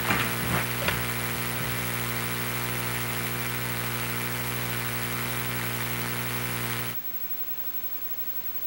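Steady electrical hum and buzz, one low tone with many overtones, with a few light knocks in the first second. About seven seconds in the buzz drops away to a faint hiss.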